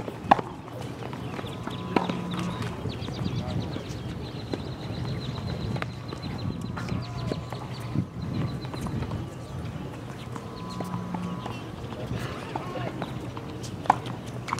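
Tennis balls struck by racquets in a rally on an outdoor hard court: sharp pops a few seconds apart, the loudest just after the start, about two seconds in, about eight seconds in and at the end, with fainter knocks of bounces between.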